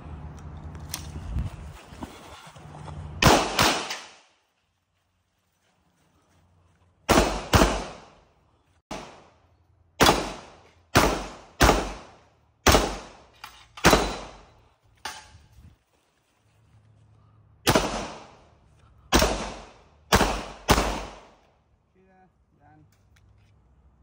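Pistol shots fired through a practical-shooting course: about eighteen sharp reports, the first pair about three seconds in, then mostly quick pairs with gaps of a second or two between them, the last about three seconds before the end.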